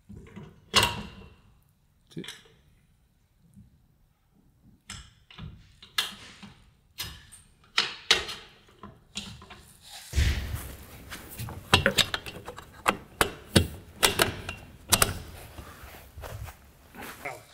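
Metal clothesline arms and their plastic end caps being fitted into a metal wall bracket: scattered clicks and knocks, sparse at first and busier from about ten seconds in, where a heavy thump comes.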